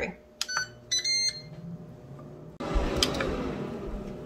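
Cosori air fryer's control panel beeping as the cooking program is started, a couple of clicks and a short electronic beep, then its fan starts with a low hum. Past halfway a louder, steady rushing of air sets in suddenly, with a knock.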